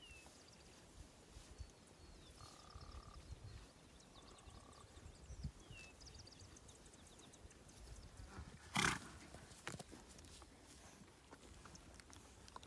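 Wild ponies grazing close by, mostly quiet. About nine seconds in, a pony gives one short snort. A few faint high chirps come earlier.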